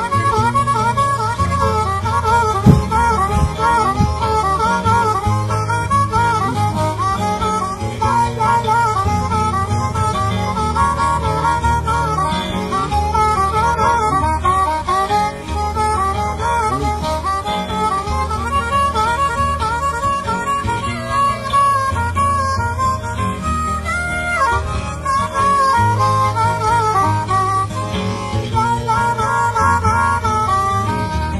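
Piedmont blues instrumental break: a diatonic harmonica solo with bending, wavering notes over acoustic guitar keeping a steady bass line.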